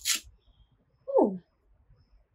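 A woman's short exclamation, 'ooh', falling in pitch, about a second in.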